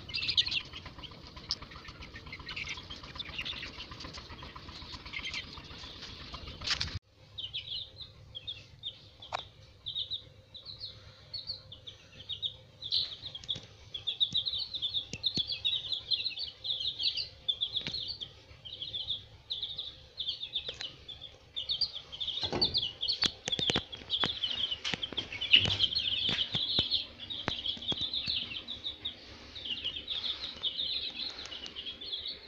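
A group of chicks peeping almost without pause, a busy run of short high cheeps that grows thicker toward the end, with a few sharp clicks about two-thirds of the way through. Before the peeping, about the first seven seconds hold a steady background hiss with only a few faint peeps, cut off abruptly.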